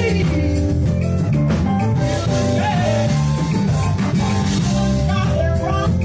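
Live gospel performance: a men's vocal group singing into microphones over a band of drum kit, electric bass guitar and keyboard.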